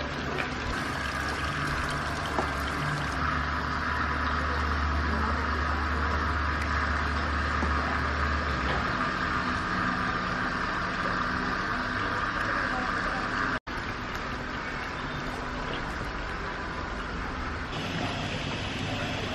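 Steady outdoor street ambience with a low vehicle-engine rumble that stops about halfway through, broken by a brief dropout about three-quarters of the way in.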